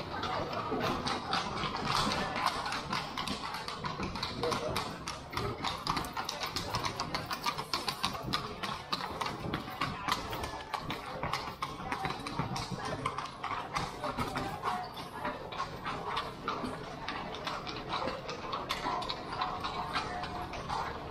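Hooves of carriage horses clip-clopping on cobblestones as a horse-drawn carriage passes, a dense run of hard clicks, with voices of people in the street.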